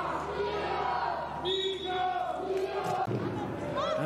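Football crowd in the stands chanting, a chant of long held notes repeated over and over.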